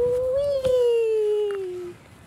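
A toddler's long drawn-out vocal note, held for nearly two seconds, rising slightly and then sliding slowly down in pitch before stopping.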